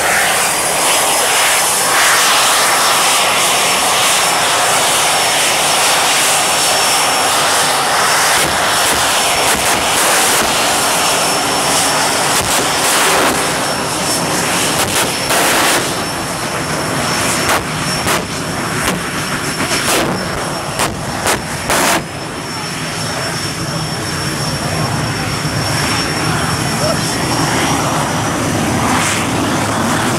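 Jet car's turbine engine running while the car stands still: a loud, steady rush with a high whine that climbs a little at first and then holds. A cluster of sharp cracks comes a little past the middle.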